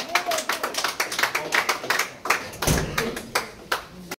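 A small crowd clapping in scattered, uneven claps, with a low thud a little under three seconds in.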